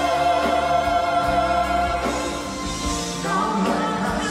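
Live concert performance of a Broadway medley: singers with a band backing them. A long note is held, and the music moves into a new phrase about two seconds in.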